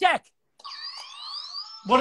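Electronic game-show buzzer sound effect: a quiet electronic sound about a second long, with tones gliding upward over a steady tone, played just after the answer is given.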